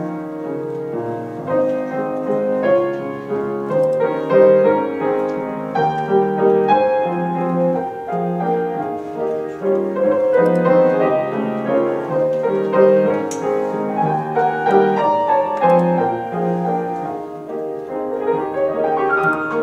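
Grand piano played solo: a classical piece with quick runs of notes in the treble over recurring bass notes.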